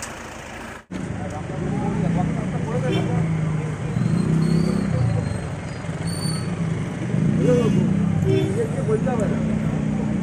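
Men's voices talking over a steady low vehicle-engine hum, with a brief total drop-out about a second in where the footage cuts.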